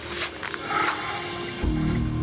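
Clear plastic bag crinkling as it is drawn out of a paper envelope, then a low, sustained music chord swells in about one and a half seconds in.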